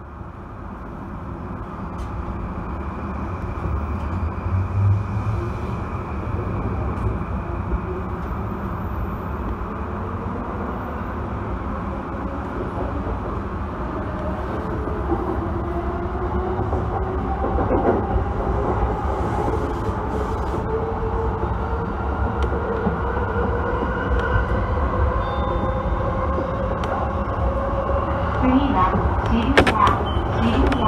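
Yamanote Line electric commuter train running along the track, heard from on board: a continuous low rumble with an electric motor whine that shifts in pitch during the second half.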